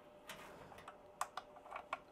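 Faint, sharp little clicks and taps, about half a dozen spread irregularly, as the current-clamp leads' plastic plugs are handled and pushed into their sockets on the energy monitor.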